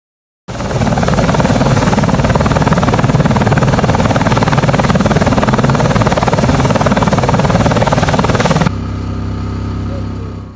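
CH-47 Chinook tandem-rotor helicopter running close by: loud, dense rotor and turbine noise with a fast flutter. It cuts off abruptly near the end and gives way to a quieter, steadier engine hum.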